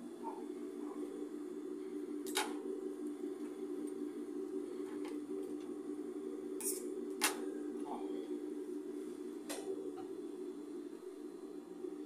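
Steady hum of an industrial sewing machine's motor running idle, with a few sharp snips of scissors trimming thread ends.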